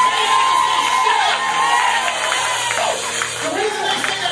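A voice holding one long high note that rises and falls for about three seconds, then breaks off, over keyboard music, with a church congregation cheering and shouting.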